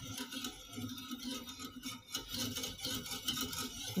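A wire whisk stirring a thin milk and egg-yolk pudding mixture in a metal saucepan, the wires scraping and clinking lightly and repeatedly against the pan.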